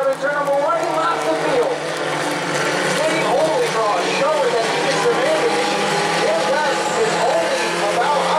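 Bomber-class stock car engines running around the oval as a steady drone, with an unintelligible public-address announcer's voice echoing over it.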